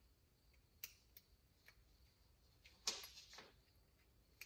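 Near silence broken by a few faint clicks and light scrapes of small carburetor parts being handled: a throttle cable being seated into the groove of a brass carburetor slide that carries its return spring. The loudest cluster of clicks comes about three seconds in.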